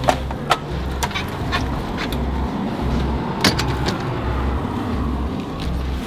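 Footsteps crunching in snow and a nylon puffer jacket rustling close to the microphone, heard as scattered sharp crunches and clicks over a steady, pulsing low rumble.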